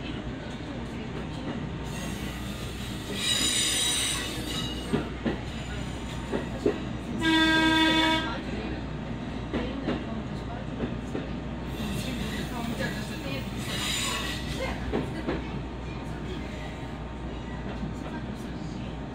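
Diesel railcar running slowly over station points, heard from the driver's cab: a steady low rumble with a few sharp clicks over rail joints, and high wheel squeal at two moments on the curves. A train horn sounds once for about a second midway and is the loudest sound.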